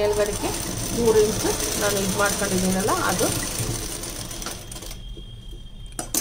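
Sewing machine stitching steadily as fabric is fed under the presser foot, running for about five seconds and then stopping.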